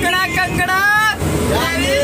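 Loud, excited voices of several young men calling out and laughing inside a moving bus, with the bus engine's low drone underneath.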